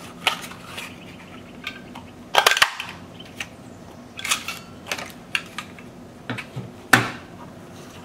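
Scallop oval craft punch snapping through a piece of cardstock, a sharp crunchy clack about two and a half seconds in, among lighter paper rustles and handling clicks. A single sharp click near the end is the loudest sound.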